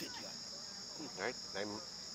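Night insects, crickets, keeping up a steady high-pitched chorus.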